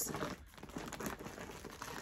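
Clear plastic bag full of yarn skeins crinkling as it is handled and shifted, an irregular rustle that is louder at first and softer after about half a second.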